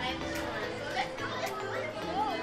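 Background music playing under the voices and chatter of children in a busy public space.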